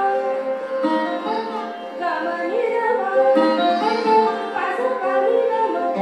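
A woman singing an Indian classical vocal line with sliding notes, accompanied by a plucked sarod.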